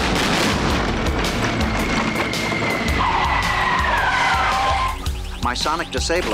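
Car tyres squealing in a burnout: a long screech over loud tyre noise that drops in pitch about four seconds in. Background music with a steady beat runs underneath, and voices come in near the end.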